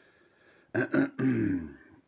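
A man's brief wordless vocal sound, about a second long, falling in pitch, coming after a moment of near quiet.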